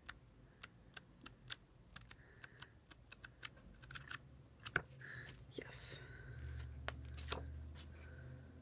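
Pages of an album photo book being flipped one after another, each turn a short tick, about three or four a second at first and fewer later, with a brief rustle of paper near the end.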